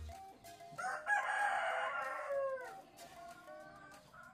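A rooster crowing: one long call of about two seconds that drops in pitch at the end, then fades into a fainter tail.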